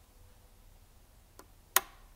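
A faint click, then a single sharp, loud click near the end: the rocker power switch on a Kaleep 948Q screen separator being pressed on to start its heat plate.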